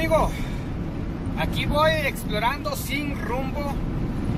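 Steady low road and engine rumble inside a moving car's cabin, under a man talking.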